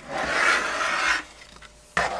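A 1/5-scale RC car chassis being turned over on the work surface: a rasping rub of about a second as it slides, then a single sharp knock near the end as it is set down.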